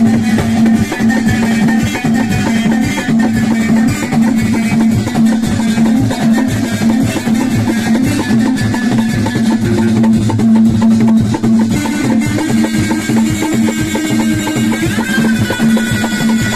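Live Moroccan chaabi music with a steady driving beat on hand drums: a frame drum with metal jingles and a clay tarija goblet drum. A plucked string instrument plays along.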